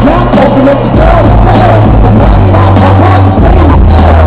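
Loud music from the PA speakers for a yo-yo freestyle routine: a song with a sustained, shifting bass line and a melody that bends up and down above it.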